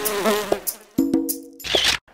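Cartoon-style bee buzzing sound effect, wavering up and down in pitch as it flies past, over a few short musical notes; a brief rush of noise near the end.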